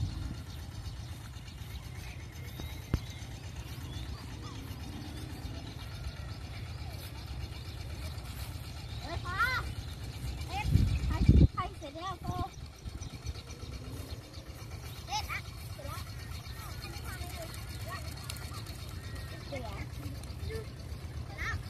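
Children's high voices calling out now and then across an open field, over a steady low rumble of wind on the microphone, with one loud low gust a little past halfway.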